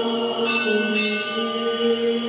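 Orthodox liturgical chant sung in long held notes, with a bell ringing over it about half a second in.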